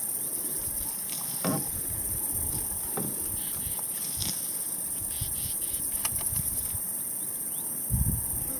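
Bushveld ambience: a steady, high-pitched insect buzz with a low, uneven rumble underneath and a few soft knocks now and then.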